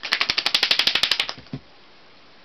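A fast run of sharp clicks, about a dozen a second, lasting just over a second, followed by a single dull thump.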